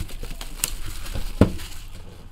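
A cardboard trading-card box handled on a tabletop: light rustling and a few small knocks, with the loudest knock about a second and a half in as the box is set down.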